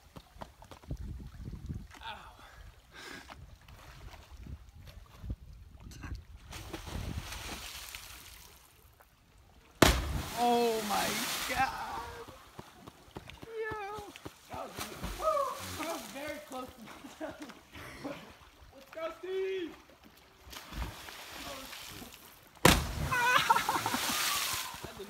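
Two jumpers hitting the water of a quarry pool after cliff jumps, about ten seconds in and again near the end: each entry is a sharp crack like a gunshot followed by a splash. Voices shout and whoop after the first entry.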